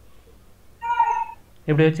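A short high-pitched animal call about a second in, then a person's voice starting near the end.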